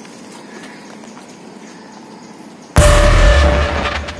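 Horror-film sound-effect hit: a sudden loud boom with a deep rumble and a held mid-pitched tone, coming near the end and fading over the next second and a half. Before it there is only a faint, steady background.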